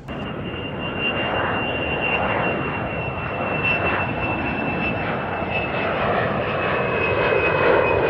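Jet airliner engines running: a steady roar with a high, sustained whine that sinks slightly in pitch.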